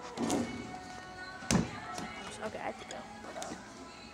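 A basketball thumps once against a toy arcade-style basketball hoop game about a second and a half in, with a lighter knock near the start, over background music and voices.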